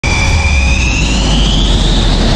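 Jet engine: a high turbine whine that climbs steadily in pitch over a deep rumble, starting suddenly.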